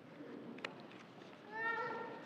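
Congregation settling into its seats: faint rustling and shuffling, with a single click and then a brief high squeak about one and a half seconds in.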